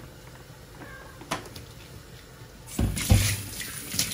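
Quiet kitchen handling for most of the time, then near the end a kitchen tap is turned on and water runs into a stainless-steel sink, with a couple of low knocks as things are set down in it.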